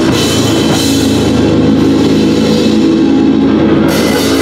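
Live heavy metal band playing loud, with electric guitar and bass over a full drum kit. The cymbals thin out about halfway through and crash back in near the end.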